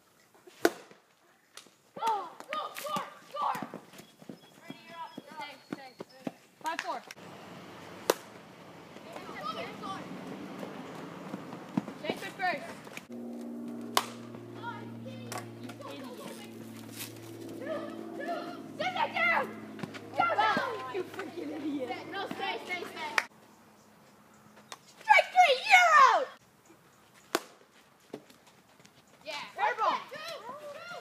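Young players shouting and cheering in an outdoor game, loudest in a burst of yelling near the end, with scattered sharp knocks between the calls. Through the middle stretch a low steady chord hums under the voices for about ten seconds.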